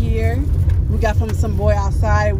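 Voices talking inside a car, over the car's steady low rumble.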